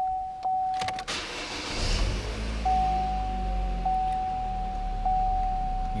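2014 Chevy Cruze's 1.8-litre four-cylinder engine starting about a second in and then idling steadily, heard from inside the cabin. A thin steady high tone sounds over it, cutting out while the engine catches and coming back once it idles.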